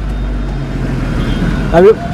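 Low, steady rumble of a motor vehicle running close by, with no speech over it until a man starts talking again just before the end.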